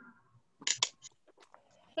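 Two sharp clicks a little over half a second in, followed by several fainter taps, coming over an online call's open microphone; the teacher takes the noise for a student's cell phone.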